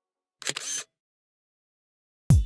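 Camera shutter sound effect: one short two-part snap, under half a second long, as a selfie is taken.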